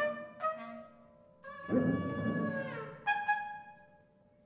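Acoustic ensemble in free improvisation, playing sparse, short wind and brass notes with gaps between them; one note slides down in pitch near the middle.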